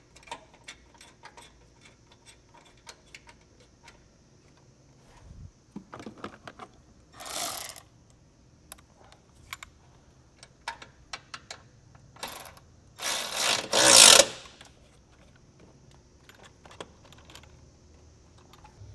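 A hand ratchet clicks in short runs as a 10 mm bolt is threaded back in through a bracket. Short bursts of a cordless power tool running follow, and the longest and loudest comes near the end.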